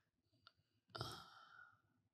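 Near silence in a small room, broken by a faint click about half a second in and then a short, soft sigh from a person about a second in.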